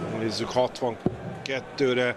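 Commentary speech over a couple of sharp thuds, steel-tip darts striking the dartboard, the clearest one about a second in.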